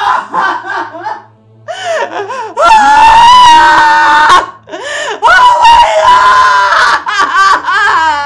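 A woman wailing and sobbing in long, drawn-out, wavering cries, with a man laughing.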